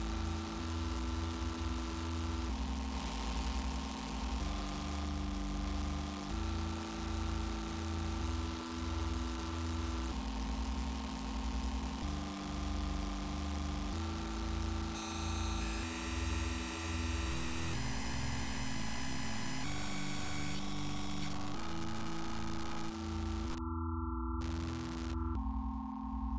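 Synthesizer chords played on a keyboard, held notes that change together about every two seconds over a deep repeating bass, with a layer of hiss on top. The hiss drops out briefly near the end.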